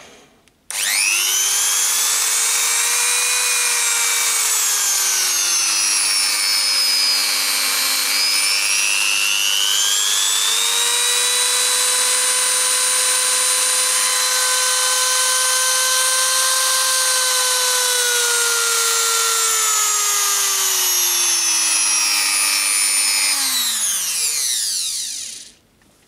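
Hilda MD13 350 W rotary tool's brushed motor switched on and running free with no load, a high whine. About a third of the way in the speed drops and then climbs back, holds steady, and near the end falls away as the tool is turned down and switched off, winding down to a stop.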